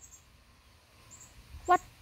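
A pause with only faint background noise and a few faint high chirps, broken near the end by one short voiced syllable from a woman.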